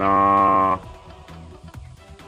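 A drawn-out hesitation syllable, "naaa", held at one steady pitch for under a second, over background music of plucked stepping notes that carries on alone after it.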